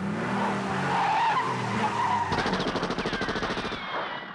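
Cartoon sound effects over the title card: a loud rushing, skidding noise for about two seconds, then a rapid, even rattle with falling whistles that fades out near the end.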